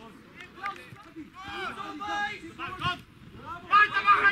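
Men's voices shouting and calling out across a football pitch during open play: short calls from about a second and a half in, then louder shouts near the end.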